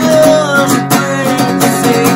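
A man singing to a strummed acoustic guitar, holding a long sung note that dips in pitch.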